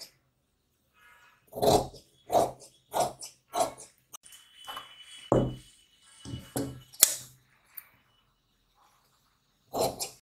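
Large steel tailoring shears snipping through saree fabric: four cuts about two-thirds of a second apart, then fabric being handled with a sharp click in the middle, and another snip at the very end.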